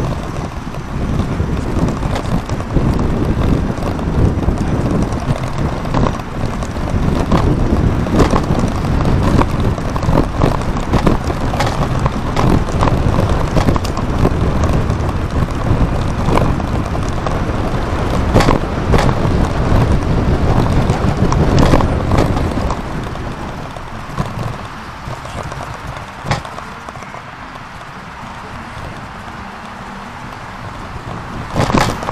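Wind rushing over a bike-mounted camera's microphone along with tyre noise on the road, broken by scattered sharp clicks and rattles. The rush drops away noticeably about three-quarters of the way through.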